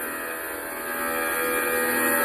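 A steady hum with many even overtones, slowly growing louder.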